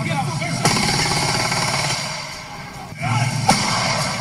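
Rapid gunfire from a phone recording: a dense run of shots that eases about two seconds in and picks up again near three seconds, with voices crying out over it.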